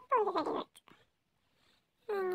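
A small child's brief high-pitched vocal sound that falls in pitch, lasting about half a second near the start, then quiet.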